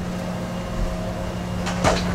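A steady low mechanical hum with one constant tone, over a faint even hiss. There are a couple of short knocks near the end.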